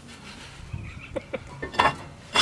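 A few light metal clicks and knocks as a drilled and slotted brake rotor is slid onto the wheel hub, the loudest near the end.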